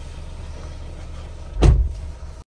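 A Mahindra Thar's door slamming shut, a single loud thump near the end, over a steady low rumble in the cabin.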